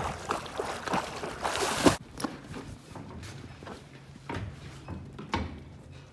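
Water splashing and churning from a swimmer's kicking feet, cutting off abruptly about two seconds in. After that come a few light, scattered knocks.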